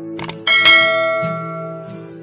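Subscribe-button animation sound effect: two quick clicks, then a bright bell chime about half a second in that rings out and fades over about a second.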